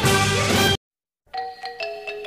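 Background music: a full band piece cuts off abruptly under a second in, with half a second of dead silence, then a new piece begins with sparse, struck, ringing bell-like notes.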